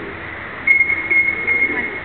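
A single high, steady whistle blast lasting about a second, over background voices.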